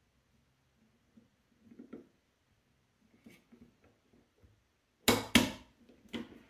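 Faint small clicks of parts being handled as an airsoft gun's gearbox shell is pressed closed by hand, then two sharp, loud clacks about a third of a second apart near the end as the shell halves are forced together against the mainspring.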